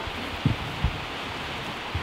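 Straw bedding rustling under a steady hiss, with two soft low bumps about half a second and nearly a second in.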